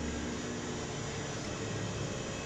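Steady background hiss with a faint low hum: room noise with no distinct event.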